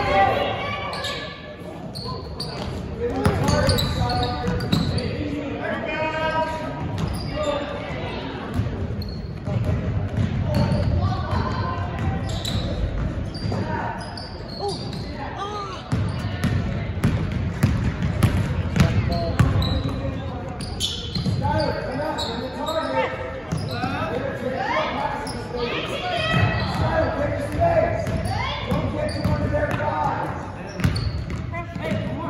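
A basketball bouncing on a hardwood gym floor during play, amid players' and spectators' voices calling out across a large gym.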